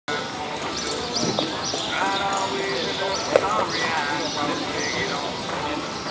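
Indistinct voices of people talking in a large, echoing indoor arena, with repeated short high chirps and one sharp knock about a third of the way in.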